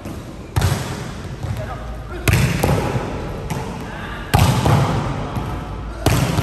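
Volleyballs being spiked, three hard smacks about two seconds apart, each ringing on in the echo of a large sports hall.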